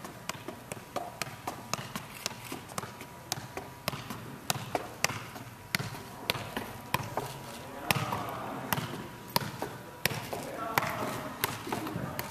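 A soccer ball being juggled, the player's foot and knee tapping it in a steady run of sharp touches, about three a second.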